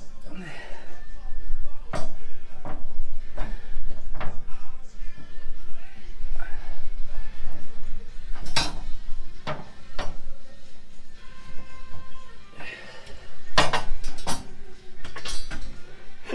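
Steel coil spring being forced by hand into a truck's rear coil perch, knocking and scraping against the metal with scattered sharp clanks. The spring is too tight to go in without compressing the suspension with a jack.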